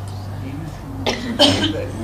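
A person coughing, a couple of short coughs about a second in, over a steady low hum from the sound system.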